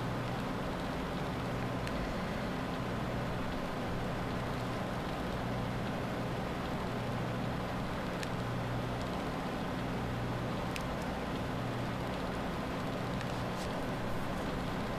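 Steady low electrical hum and hiss, with a few faint light clicks.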